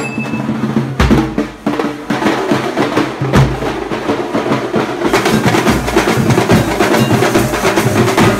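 Processional drumming on dhol drums, beaten in a fast, steady rhythm; about five seconds in it grows denser and brighter as the playing thickens.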